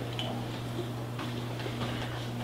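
A pause between words: room tone with a steady low hum and a few faint ticks.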